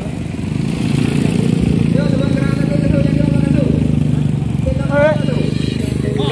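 Motorcycle engines running as motorbikes ride slowly past in a crowd, with a steady hum underneath. People's voices call out over it, one held call in the middle and a rising-and-falling shout near the end.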